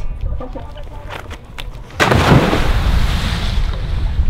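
A person's body hitting the sea after a jump from a pontoon: one loud, sudden splash about two seconds in, hissing away over the next second or two.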